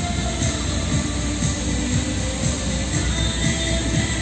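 The Bellagio fountain's rows of water jets shooting up and the spray falling back onto the lake make a steady rushing noise, with the show's music playing over loudspeakers underneath.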